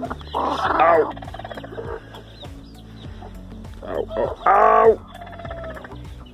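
Broody hen sitting on eggs giving two loud, harsh calls, each under a second long, one just after the start and one about four and a half seconds in, as a hand reaches under her: the defensive protest of a sitting hen disturbed on her nest.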